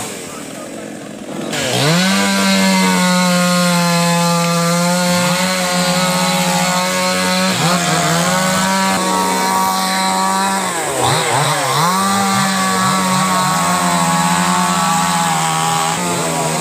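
Small two-stroke chainsaw running at high speed while clearing a fallen tree, starting about two seconds in. Its pitch sags and recovers twice as it works through the wood.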